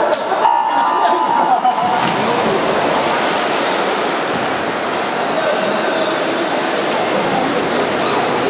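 A start signal tone about half a second in as the swimmers leave the blocks, then steady splashing of several swimmers racing freestyle, echoing in a large indoor pool hall.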